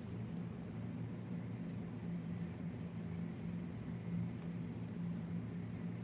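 Steady low hum over a faint even hiss: background room noise.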